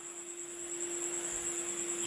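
Pause between phrases of speech, leaving a steady background hiss with a constant low hum and a faint high-pitched whine in a live-stream audio feed.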